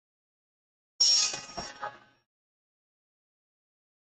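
A brief metallic clatter about a second in: a sudden clang followed by a few lighter clinks that die away within about a second.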